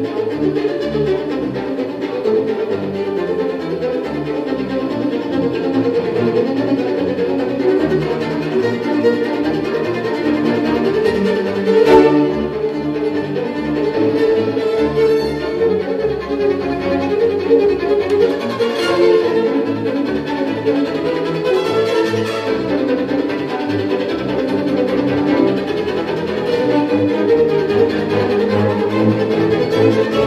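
Solo violin playing a virtuoso line over a string chamber orchestra, with cimbalom in the accompaniment and a few sharp accents along the way.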